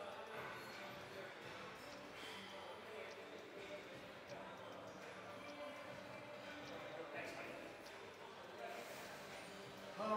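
Faint, indistinct voices in the background over a steady room hum, with a few soft thuds or knocks now and then.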